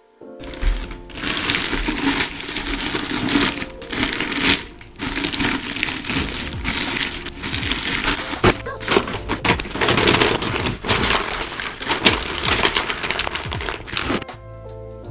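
Plastic bin liner rustling and crinkling loudly as it is shaken open and fitted into a plastic wastepaper bin, with a few brief sharp crackles among it.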